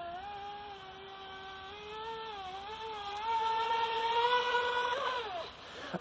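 Feilun FT011 RC speedboat's brushless electric motor whining at speed in the distance on a 4S LiPo. The pitch wavers, climbs and grows louder in the second half, then drops and fades just before the end.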